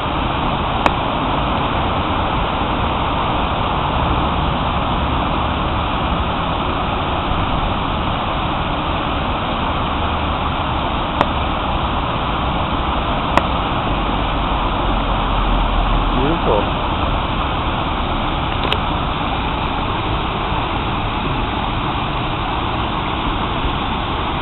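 Water pouring steadily over the ledges of a stepped stone fountain and splashing into the pool below.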